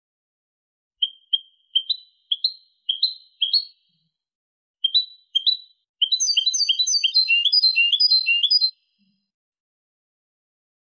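European goldfinch singing a Malaga-style tutoring song: a string of short upward-flicking notes, mostly in pairs, a brief pause, then a fast run of rising notes for nearly three seconds that stops abruptly near the end.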